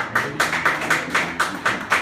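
Hands clapping in applause, about four claps a second.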